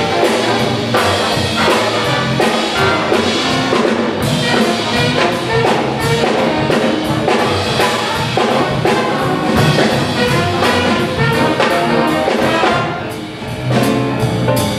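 A high school jazz big band playing live: saxophones and trumpets over upright bass in a rhythmic ensemble passage, dipping briefly in volume about a second before the end.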